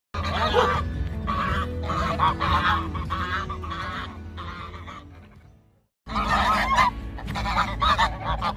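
Flock of domestic geese honking repeatedly, the calls fading out about five seconds in, then starting again loudly after a brief break.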